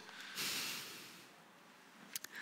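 A man's breath out through the nose into a close microphone, about a second long and fading away.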